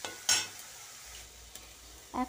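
Masala frying in a kadai with a faint steady sizzle, and one brief sharp knock about a third of a second in as an egg goes into the pan.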